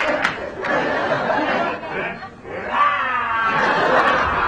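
Theatre audience laughing and murmuring, with a brief lull a little past halfway before the laughter picks up again.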